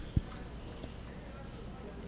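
Quiet outdoor background noise during a pause in conversation, with one soft low thump a fraction of a second in.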